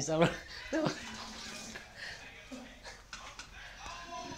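People's voices in a small room: a couple of short exclamations in the first second, then quieter talk.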